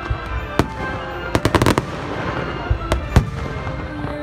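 Aerial fireworks going off: a series of sharp bangs and crackles, with a quick cluster of reports about a second and a half in.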